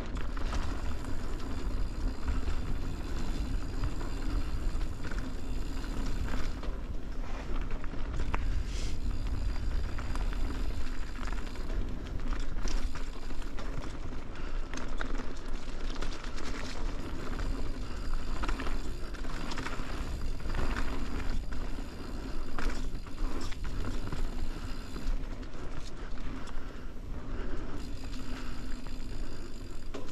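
Mountain bike rolling fast down a dirt singletrack: tyres on packed dirt and leaves, with chain and bike parts rattling over bumps and a deep rumble on the mounted camera's microphone. A thin high buzz comes and goes.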